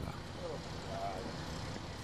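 Steady outdoor street background noise, with a faint voice briefly heard about half a second and a second in.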